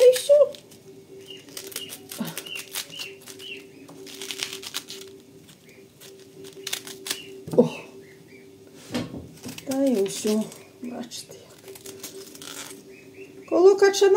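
Small kitchen knife cutting the core out of a cabbage head and then scraping and tapping on a wooden cutting board: a string of short crisp cuts and clicks. A steady low hum runs underneath.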